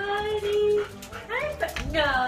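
A dog whining: a long held whine, then short rising whines and a falling one near the end.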